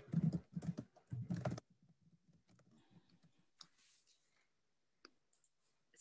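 Computer keyboard typing and clicks picked up by the computer's own microphone: a quick run of keystrokes in the first second and a half, then a few faint isolated clicks.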